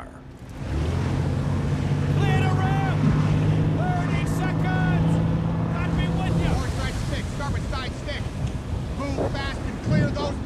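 WWII landing craft running through rough sea: a steady low engine drone under the wash of waves, spray and wind. The drone stops about two-thirds of the way through while the water and wind noise carries on.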